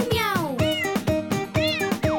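A cat meowing a few times, in rising-and-falling calls, over light children's music.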